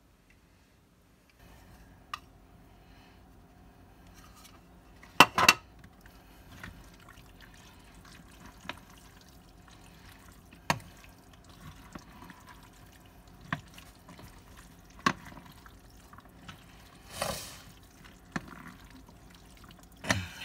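A spoon stirring a thick, wet mixture of ground beef, beans, corn and cheese in a glass mixing bowl, with sharp clinks of the spoon against the glass every second or two; the loudest is a double clink about five seconds in. A steady low hum runs underneath, starting after a second or so of silence.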